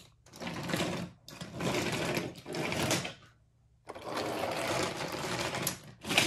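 Wooden toy trains being pushed along wooden track, their wheels rattling over the rails in several runs with a short gap a little past the middle.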